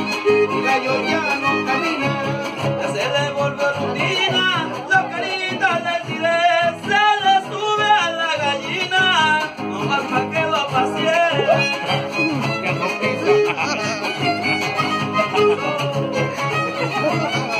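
Trío huasteco playing an instrumental passage of a son huasteco: the violin carries a gliding, ornamented melody over the strummed rhythm of the jarana and huapanguera.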